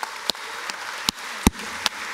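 A congregation applauding in a large hall: a thin spread of clapping with a few sharp, louder claps standing out, the loudest about one and a half seconds in.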